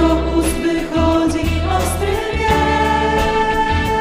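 Live worship band with three women singing together in Polish, backed by electric guitar, drums and a low bass line. In the second half a high note is held out.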